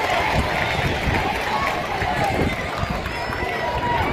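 Stadium crowd noise: many voices shouting and talking at once, at a steady level.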